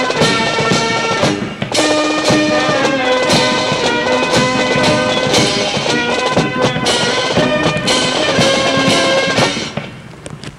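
Military brass band playing, with brass chords and drum strikes, the music stopping shortly before the end.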